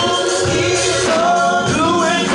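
Gospel praise-team singing: several voices singing together into microphones, holding and bending long notes.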